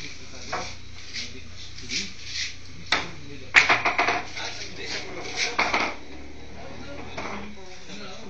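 Pool balls clacking under a cue stroke: a sharp click about three seconds in, then a quick run of clicks as balls knock together, and a few more clicks near six seconds.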